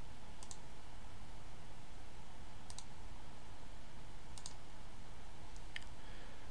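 A few light clicks from working a computer, in small pairs spaced a couple of seconds apart, over a steady low hum.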